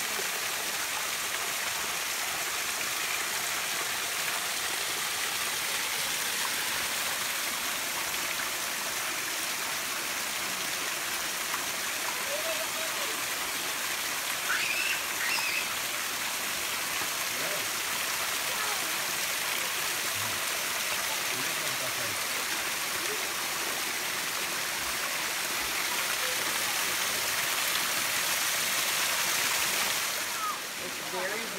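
Small waterfall pouring over a rock ledge into a shallow pool: a steady, even rush of falling water, a little louder near the end.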